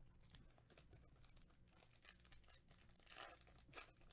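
Faint crinkling and tearing of a foil trading-card pack wrapper being opened by hand, with louder crackles near the end.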